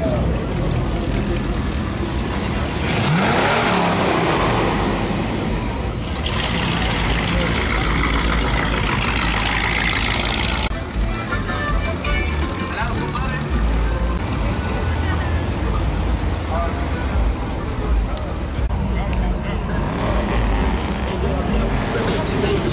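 Classic lowrider cars rolling slowly past with their engines running, a steady low rumble, mixed with music and people's voices.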